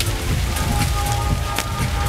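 Rustling, crackling patter of wind-blown white strips in an art installation, over a heavy low rumble of wind on the microphone. Faint music plays in the background, with a couple of held notes in the second half.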